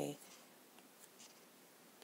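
Faint taps and strokes of a stylus writing on a tablet screen, a few light ticks over low room noise.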